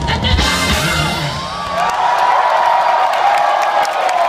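A live band with drums and bass plays the final bars of the song and stops about halfway through. A large crowd then cheers and whoops.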